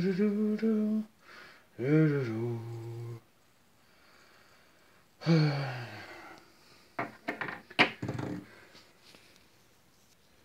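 A man singing wordless "la" notes in three short phrases, each held and sliding in pitch, the last one falling and breathy. Near the end come a few sharp clicks and rustles.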